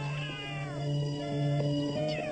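Cartoon soundtrack music with steady held notes, over which a high, wavering cry falls in pitch during the first second.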